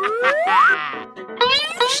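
Comic sound effects over light background music. A smooth rising whistle-like glide climbs over most of the first second, and a second quick rising sweep comes near the end.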